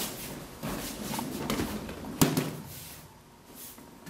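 Two people grappling on a training mat: scuffing and rustling of uniforms and bare feet, with a few knocks and one sharp thud about two seconds in as they go down to the mat.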